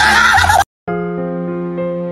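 A loud, wavering animal cry rising in pitch, cut off suddenly about half a second in; after a brief gap, slow keyboard music with long held notes.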